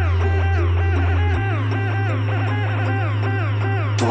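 Electronic background music: a sustained deep bass note that shifts to a different note about a second and a half in, under quick repeated plucked synth notes.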